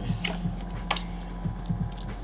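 A few light clicks and taps as a tarot card is drawn from the deck and laid down on the table, the sharpest about a quarter second and about a second in.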